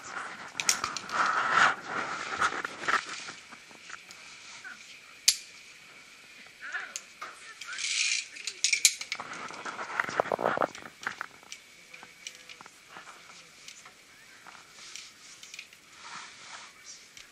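Sharp metal clicks and clinks of carabiners and a zipline pulley trolley being handled on a steel cable, one loud click about five seconds in and more near the middle.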